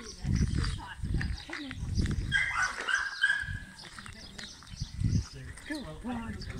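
Small dog whining briefly in thin, high tones about two seconds in, over irregular low rumbling bumps.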